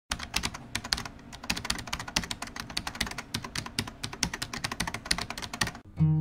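Computer keyboard typing sound effect: a fast, uneven run of key clicks that stops suddenly near the end.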